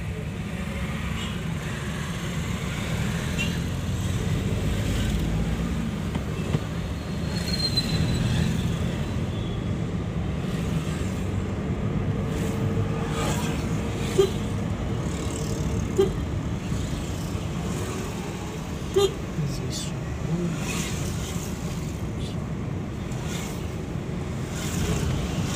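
Steady low rumble of a car's engine and tyres heard from inside the cabin while driving in city traffic, with a few short sharp sounds about halfway through and near the end.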